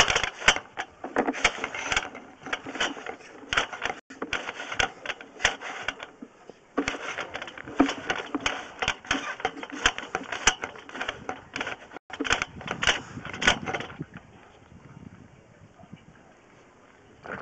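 Push-cable sewer inspection camera being fed down a drain line: a rapid, irregular clatter of clicks and knocks as the cable and camera head are pushed along. It dies down about two seconds before the end as the pushing stops.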